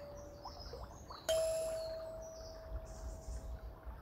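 A kalimba (thumb piano) note, plucked about a second in and ringing on for over two seconds as it fades. Faint high bird chirps sound under it.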